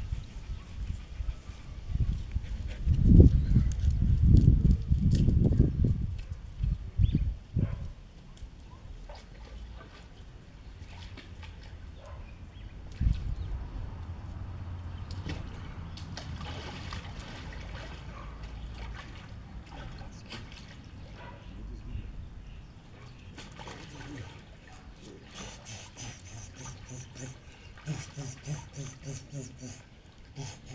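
Swimming-pool water sloshing and splashing as a dog wades on the pool step and a man walks into the water. Loud, irregular low rumbles come in the first several seconds, with a single knock about halfway through.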